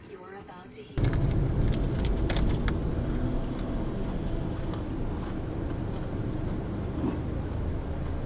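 Car and road noise picked up by a dashcam: a steady low rumble that starts abruptly about a second in, with a few sharp clicks shortly after.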